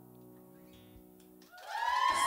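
The last chord of a live acoustic band song, guitar and keyboard, rings out and fades quietly. Near the end the audience suddenly breaks into applause, cheering and whooping.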